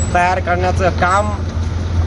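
A man talking for about the first second, then pausing, over a steady low rumble of road traffic.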